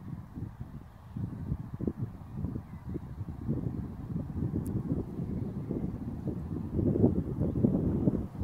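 Wind buffeting a phone's microphone outdoors: an uneven, gusty low rumble that grows stronger near the end.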